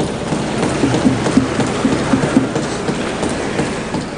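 Many members of parliament thumping their wooden desks in applause, a loud, dense, rhythmic clatter of knocks.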